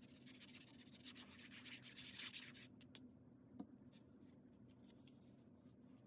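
Faint scratchy rubbing of a liquid-glue bottle's fine tip drawn across cardstock. It fades after about three seconds into quieter paper handling, with one small tap about halfway through.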